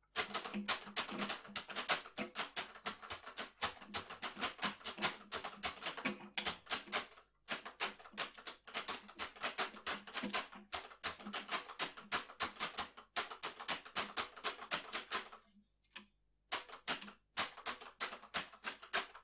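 Rapid, irregular clicking, sharp strokes in quick succession. It breaks off briefly about halfway through and again for about a second near the end.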